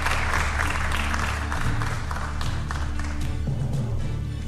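Audience applauding over a steady music bed. The clapping is densest in the first two seconds and then thins while the music carries on.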